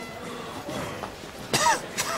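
A person's short, sharp cough about one and a half seconds in, with another starting just at the end.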